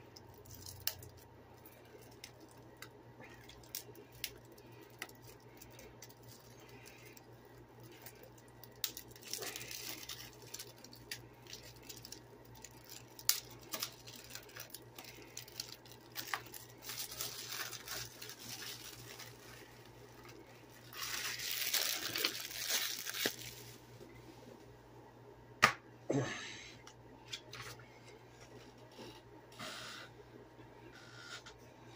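Quiet handling of a plastic 4K Blu-ray case as it is opened: scattered small clicks and taps, with bursts of crinkling about a third of the way in, just past halfway, and for about two seconds around two-thirds through. A sharp click comes near the end, followed by a brief throat clear.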